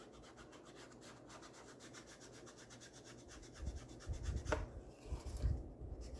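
An ink blending tool rubbed over the edges of a paper tag in rapid, even strokes, a faint scratchy swishing that distresses the tag with ink. In the last couple of seconds come low thuds and one sharp tap as the tool and paper are handled on the table.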